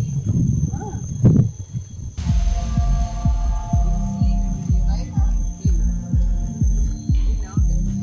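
Handheld camera carried at a walk: low rhythmic thumping of footsteps and handling on the microphone, about two beats a second, starting about two seconds in.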